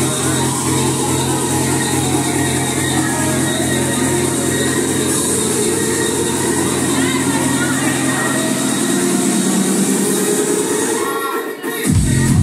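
Electronic dance music played loud over a club sound system, with a steady heavy bass. Near the end the bass drains out for a moment in a breakdown, then the full beat drops back in.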